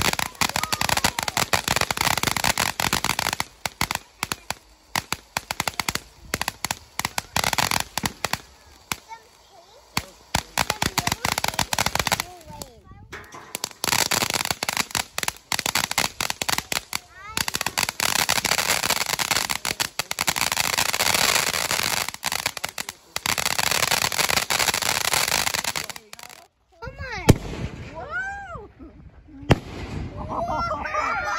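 Consumer ground fireworks going off: a fountain hissing and crackling with rapid pops as it sprays sparks. It comes in several long bursts separated by short breaks.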